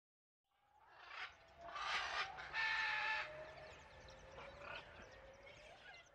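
Animal calls: a few loud, harsh cries with pitched notes between about one and three seconds in, then quieter calls that fade toward the end.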